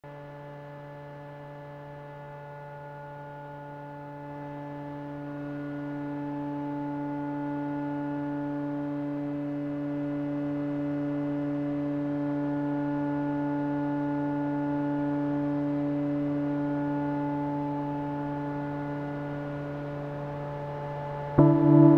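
Music intro: a single steady low drone, rich in overtones, held without a break, swelling in loudness from about four seconds in and easing slightly near the end.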